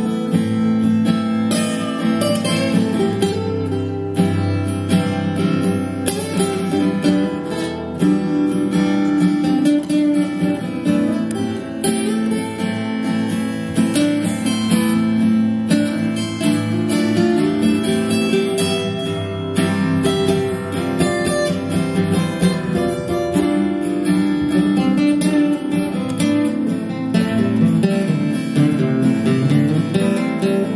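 Steel-string acoustic guitar played live in a continuous instrumental passage of strummed and picked notes, with no singing.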